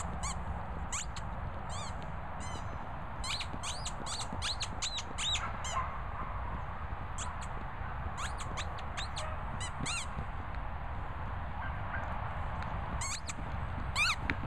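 A crocodile squeaky dog toy squeaking in quick, irregular bursts of short high squeaks as a border collie bites and chews it, over a steady low background rumble.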